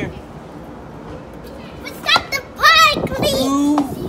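Children playing, with a loud, high-pitched wavering squeal from a child about two and a half seconds in, followed by a lower drawn-out vocal call.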